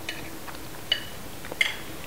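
A metal spoon clinking lightly against a plate, three small clinks, the second and third ringing briefly.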